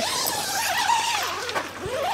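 A long tent zipper on a nylon awning-room door being pulled open by hand, a continuous rasp with rustling fabric; its pitch wavers as the pull speeds up and slows.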